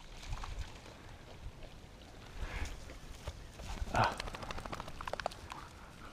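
Faint wind rumble on the microphone, with a quick run of light footfalls or ticks in the second half.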